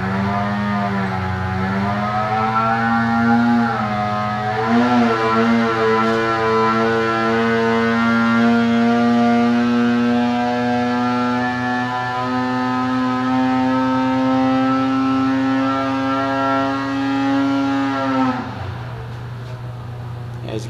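The C-TEC 800 two-stroke twin of a 2020 Arctic Cat Alpha snowmobile making a dyno pull under load. The engine revs up, dips briefly about four seconds in, then climbs slowly and steadily in pitch at high rpm. It drops off when the throttle is closed near the end.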